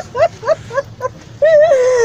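A woman crying in grief: a run of short, rising sobs, about four a second, then a long wavering wail about a second and a half in.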